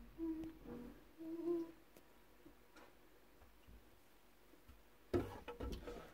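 A person humming softly, two short low notes in the first couple of seconds, then quiet. Near the end comes a burst of rustling and knocking.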